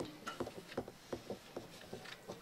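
Faint, scattered small knocks and rustles of people moving at their seats in a hushed meeting chamber, with no speech.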